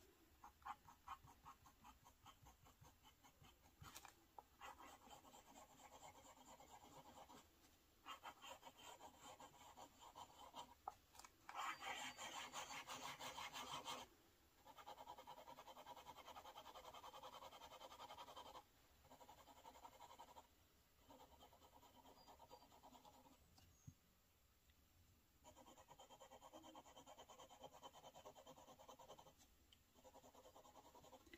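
Medium steel-nib fountain pen writing on dot-grid paper: a faint scratching of the nib, first in short separate strokes, then in runs of rapid back-and-forth shading a few seconds long with brief pauses between.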